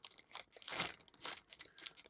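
Thin clear plastic kit bag crinkling in several short bursts as a clear plastic sprue is worked out of it.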